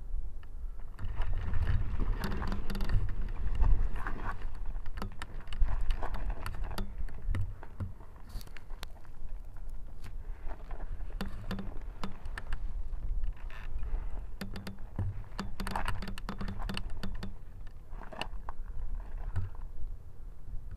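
Irregular clicking and rattling from the hang glider's frame and keel-mounted camera as the pilot holds and shifts the glider at launch, over a low rumble of wind on the microphone.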